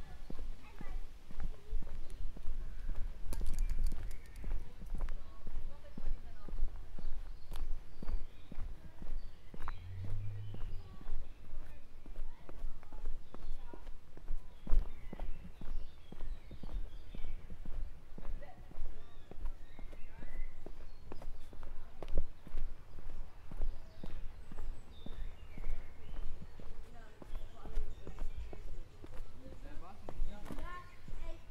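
Footsteps of a person walking at a steady pace on a paved path, heard close up as a regular run of soft thuds.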